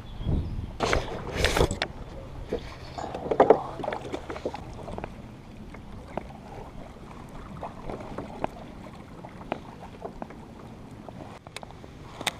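Paddling a plastic kayak on a pond: water moving around the hull and paddle, with scattered small knocks and clicks of gear on the boat. A few louder rustling bursts of handling noise come in the first few seconds.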